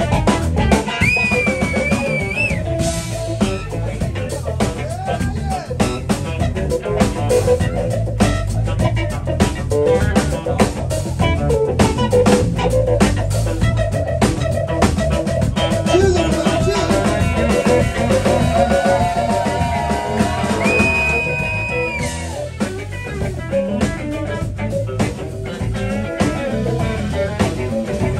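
A live blues band playing a jam: drum kit, electric bass, electric guitar and keyboard. There are held lead notes that bend in pitch, once near the start and again about two thirds of the way in.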